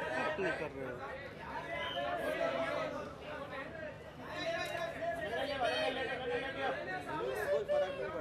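Several overlapping voices talking and calling out at once: crowd chatter.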